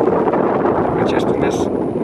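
Wind buffeting the microphone, with a car driving past close by on the paved road.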